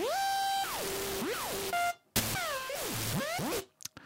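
ZynAddSubFX software synthesizer playing a patch built to imitate a scratched vinyl record, with its pitch LFOs switched off: a distorted tone over hiss slides up in pitch, holds, and slides back down. After a brief cut about halfway through it swoops down and back up several times.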